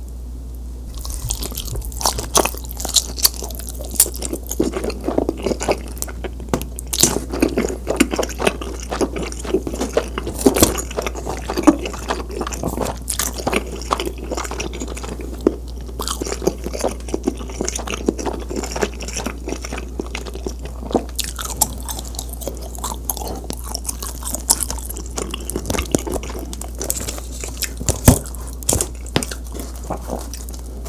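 Close-miked chewing of a mouthful of honey-dipped cheese pizza: irregular crisp crunches and wet mouth sounds. The chewing starts about a second in and goes on without pause.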